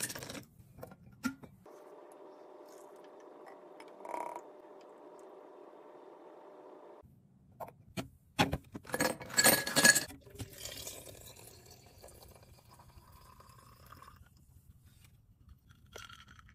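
Liquid creamer poured steadily into a glass pitcher for about five seconds, then a loud clatter of glass clinking against glass as the pitcher is set on a fridge shelf, followed by a fainter ringing trail.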